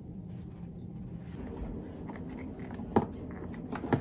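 A small puppy chewing and biting at a cardboard dog advent calendar box, with scattered crunches and crackles starting about a second and a half in, and two sharper clicks near the end.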